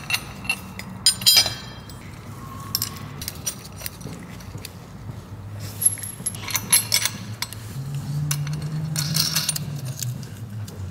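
Bolts and nuts clinking against steel mounting plates as they are handled and fitted by hand, in a few short clusters of light metallic clicks, over a steady low hum.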